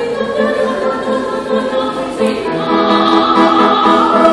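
A woman singing in a classical operatic style, moving through several notes and then holding one long note through the second half.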